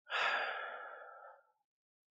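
A man's long breathy sigh out, about a second and a half, fading away.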